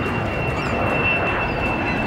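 Small jet aircraft's engines running, a steady high whine over an even rushing noise.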